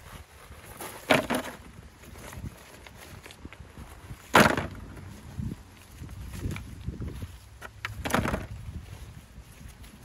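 River stones clacking together as they are picked out of the gravel by hand and dropped into a bucket. Three sharper knocks stand out, about a second in, near the middle (the loudest), and about eight seconds in, among smaller clicks and scraping of stone.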